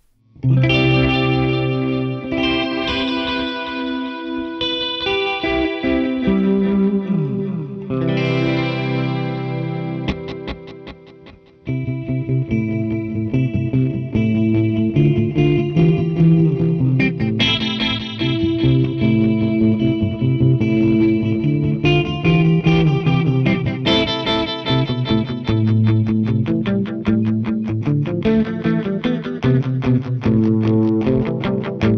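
Gibson Les Paul electric guitar played through a Meris Polymoon pedal set to a rhythmic multi-tap modulated delay with the dimension control off. Held chords ring out with repeats for about the first ten seconds. After a brief drop, a busier picked line follows with steady rhythmic echoes.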